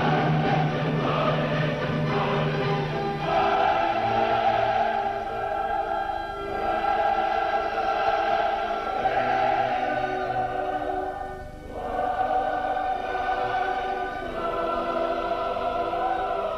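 Classical choral music: a choir and orchestra in long sustained chords, with brief breaks about six and eleven seconds in.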